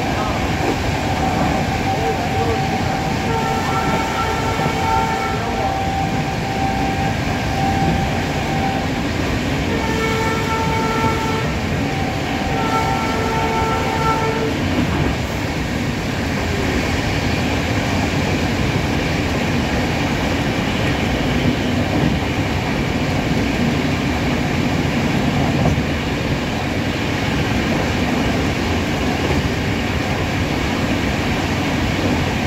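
Indian Railways passenger train running at speed, heard from an open coach doorway: a steady rumble of wheels on the rails throughout. In the first half, the locomotive's horn sounds in several separate blasts as the train nears a level crossing.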